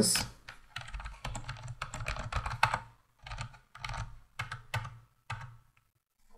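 Typing on a computer keyboard: a quick run of keystrokes for about two seconds, then about five separate clicks spaced roughly half a second apart.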